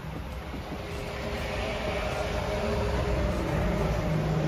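Low engine rumble of a nearby vehicle with a faint steady hum, slowly getting louder.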